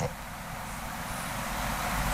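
Steady rushing background noise with no clear source, slowly growing louder, with a low rumble joining about a second and a half in.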